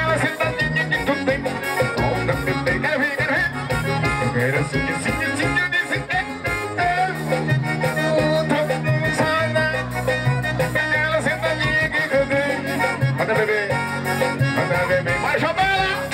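Live band music over a PA: a male singer singing into a microphone over a keyboard, bass line and steady dance beat.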